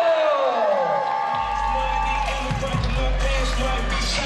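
Crowd cheering and whooping in a hall, then loud music with a heavy, steady bass line starting about a second and a half in.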